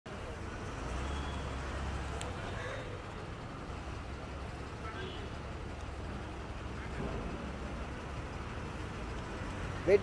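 Outdoor street background: a steady low traffic rumble with faint voices now and then.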